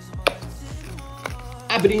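Background music with a steady beat, and one sharp tap about a quarter second in.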